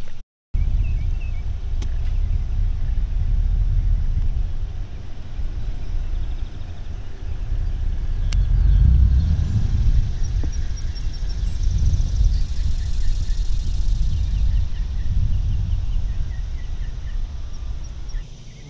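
Low, unsteady rumble of wind buffeting the microphone, swelling and easing throughout, with faint bird chirps in the middle.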